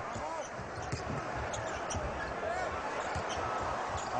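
A basketball being dribbled on a hardwood court, with short sneaker squeaks from the players, over the steady noise of an arena crowd.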